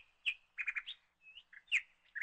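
Bird chirping: a series of short, high chirps, with a quick run of three notes a little past half a second in.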